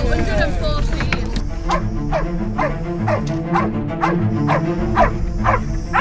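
Background music with a steady beat, over a dog barking repeatedly, about two barks a second from a second and a half in.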